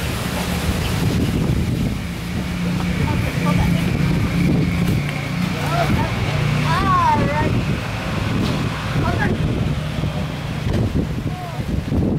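A steady low engine-like hum runs throughout. A brief high, gliding child's voice comes about seven seconds in.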